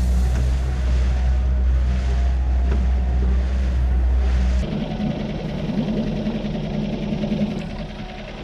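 Motorboat under way, its engine running steadily with a deep hum. A little past halfway the deepest part of the rumble drops away and a rougher, lower-level running sound carries on.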